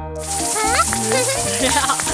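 A steady hiss of food sizzling in a frying pan, under bright background music with short wordless cartoon vocal sounds.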